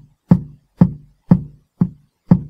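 Sampled kick drum from the DR-Fusion 2 drum plugin playing back in a looped pattern, one hit on every beat at 120 bpm, about two a second. One hit near the end is softer, because its note volume has been turned down.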